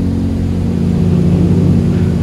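Single-engine propeller plane's engine and propeller droning steadily and loudly, heard from inside the cockpit.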